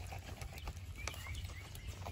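Quiet outdoor background with a few light taps and clicks from hands handling a fish on a wooden cutting board.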